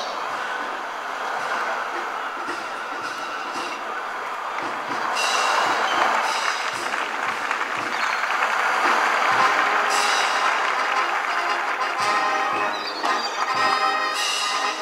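A military brass band with drums plays as it marches on, over a steady rushing noise, with regular low drumbeats throughout. The band grows fuller and louder about five seconds in.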